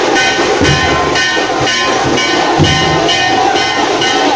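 Loud street-procession music: drums keep a steady quick beat, with a deep bass beat about every two seconds, under sustained horn-like notes.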